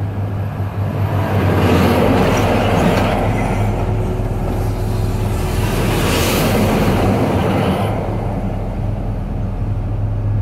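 Heavy trucks labouring up the mountain road pass close by in the opposite lane, heard through an open cab window over a steady low drone. The passing noise builds from about two seconds in, is loudest about six seconds in as a semi-trailer goes by, and fades near the end.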